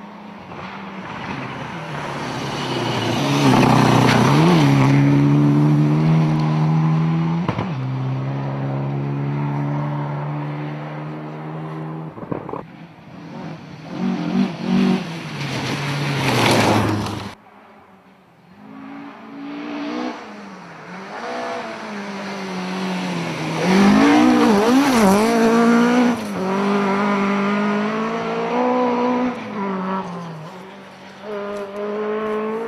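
Rally cars at speed on gravel forest stages, engines revving hard and changing gear as they pass, in several short clips that cut abruptly. The loudest passes come about four seconds in and again near twenty-four seconds.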